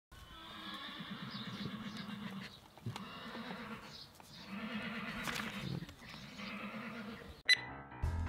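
A horse neighing several times in a row, long quavering whinnies, fairly faint. Near the end a sharp click cuts in and music begins.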